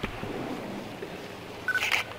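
Quiet room background with a short electronic beep near the end, followed at once by a brief higher chirp.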